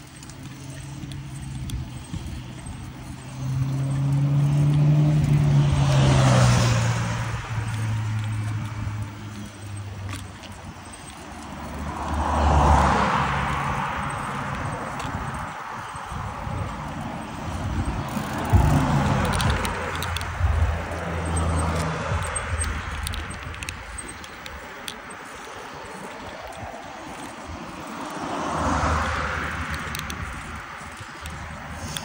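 Motor vehicles passing on a road beside the cycle path, about four times. Each one swells and fades with a falling pitch, over a steady rush of wind and tyre noise from riding a bicycle.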